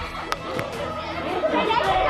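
Several people arguing, their voices overlapping and getting louder near the end, with one sharp click about a third of a second in.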